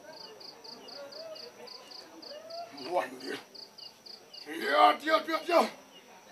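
A cricket chirps steadily at about four chirps a second, then a loud voice calls out near the end.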